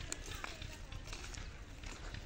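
Irregular footsteps of people and a donkey walking on a dry dirt path.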